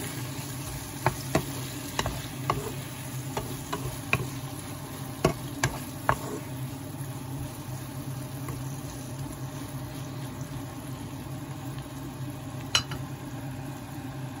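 Wooden spatula stirring shrimp, tomato and onion sautéing in a nonstick pan, with a faint sizzle under a steady low hum. The spatula taps sharply against the pan several times in the first six seconds and once more near the end.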